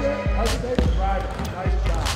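Basketballs bouncing on a hardwood gym floor, a few dribbles at uneven intervals, under background music.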